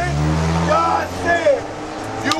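A car going by on the street: a low engine rumble that fades out a little under a second in, with a man's voice over it.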